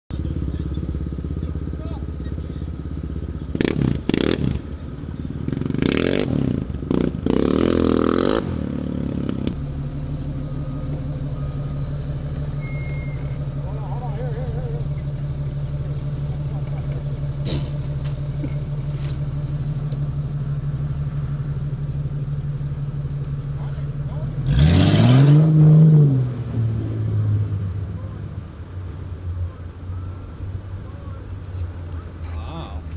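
Off-road vehicle engine idling steadily, with louder, rougher noise and a few knocks in the first several seconds. About 25 seconds in it is revved once, the pitch rising and falling, then it settles back to a lower idle.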